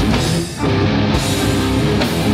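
Thrash metal band playing live: distorted electric guitars, bass and drums. The band briefly cuts out about half a second in, and the riff comes back in with the cymbals joining a moment later.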